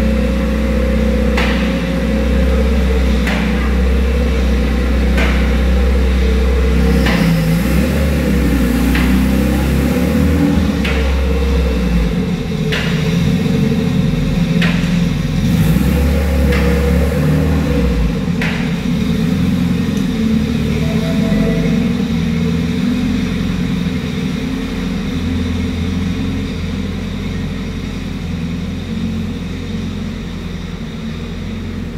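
Car engine running in a workshop with a steady low rumble that swells and drops a few times. Sharp knocks come about every two seconds through the first two-thirds.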